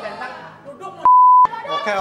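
A single steady high-pitched censor bleep, under half a second long, about a second in, with the rest of the audio cut out beneath it, amid talk.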